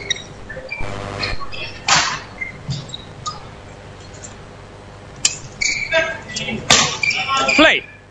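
Voices and short shouts in a large indoor sports hall, with a few sharp clicks. The busiest and loudest stretch comes about two seconds before the end, where several calls and gliding sounds overlap.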